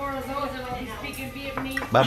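Tableware clinking: chopsticks and spoons knocking on plates and bowls at a crowded dinner table, a few short sharp clicks over steady background talk.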